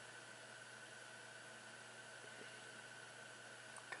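Near silence: room tone, a steady faint hiss with a thin constant high hum.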